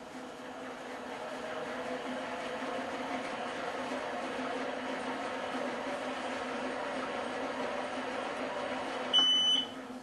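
Motorized skein winder's electric motor running steadily as it turns the swift's arms, the hum building over the first couple of seconds. Near the end a short, high electronic beep sounds and the motor winds down and stops: the yarn count has reached the 20-yard setting and the winder has switched itself off.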